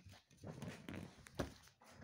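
Soft scuffling and rustling of a kitten playing on a blanket with plastic balls and a string, with a few light knocks. The sharpest knock comes about one and a half seconds in.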